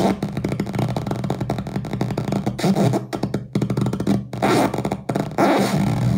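Circuit-bent Czech-language talking toy putting out harsh, glitching electronic noise: a buzzing drone chopped by rapid stuttering clicks, with a few brief dropouts.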